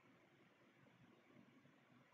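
Near silence: faint room tone between spoken passages.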